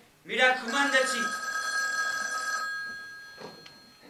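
Telephone bell ringing: one ring of about two seconds that fades away, over a brief voice at its start.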